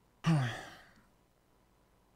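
A man's voiced sigh that falls in pitch and fades out within a second, starting about a quarter second in.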